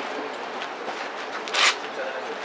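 Steady outdoor background hiss with one short, sharp rasping burst about one and a half seconds in.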